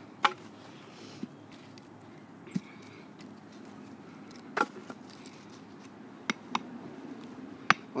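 About seven sharp wooden knocks and taps at uneven intervals, the loudest just after the start and near the end: a fixed-blade knife and pieces of wood being handled and struck while batoning.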